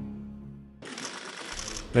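A news intro's music sting fades out. Just under a second in, it cuts abruptly to a steady hiss of rapid light clicking and rustling, the room sound of a press photo call.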